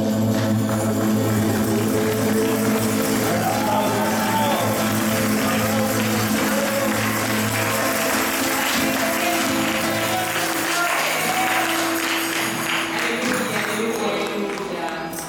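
Christian worship song playing, with sung voices over held chords; the held low chords drop away about eight seconds in.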